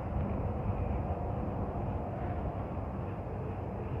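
Slow-moving freight train of covered hopper cars rolling past: a steady low rumble of steel wheels on the rails.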